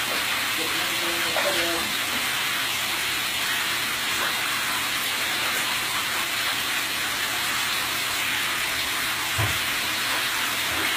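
Water running steadily from the tap into a bathtub, a constant hiss and splash.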